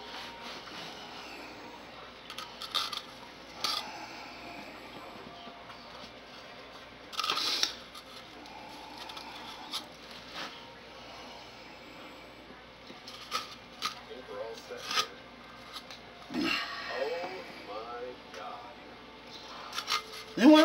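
Light kitchen handling noises, scattered taps, clicks and rustles, as raw biscuits are laid one by one onto the filling in a glass baking dish, with one louder short scrape about seven seconds in.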